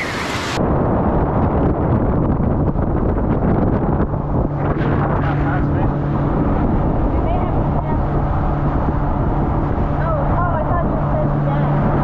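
A small tour boat running fast over open sea: a dense rush of wind on the microphone and spray off the hull, with a steady low engine hum that settles in about four seconds in. It opens with a brief splash of feet in shallow surf.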